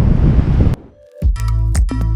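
Wind buffeting the microphone, cut off abruptly under a second in. After a brief gap, background music starts with a steady low bass and a regular beat.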